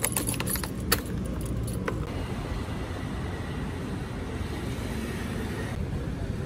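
A bunch of keys jangling and a key clicking into a scooter's ignition lock: a few sharp clicks in the first two seconds, over a steady low rumble.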